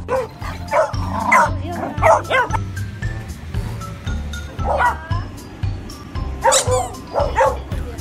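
Beagles barking and baying in short calls over background music with a steady beat. The calls come in a cluster over the first couple of seconds, again about halfway through, and twice more near the end.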